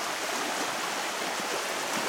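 Fast, shallow river water rushing steadily over its bed, the current strong, churned by a dog wading through it.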